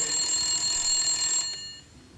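Desk telephone ringing, a steady ring that stops about one and a half seconds in as the receiver is picked up.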